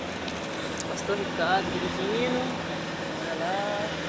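Steady road and engine noise heard inside a moving car's cabin, with a few faint, indistinct snatches of voices.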